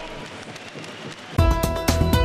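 Faint background noise, then about a second and a half in a music jingle cuts in suddenly, loud, with heavy bass, sharp repeated beats and held notes: the TV station's commercial-break jingle.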